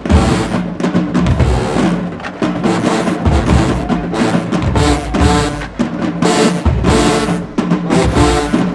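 HBCU marching band playing a hip-hop arrangement in the stands: brass and sousaphones over a drumline, with repeated bass drum hits under the horns.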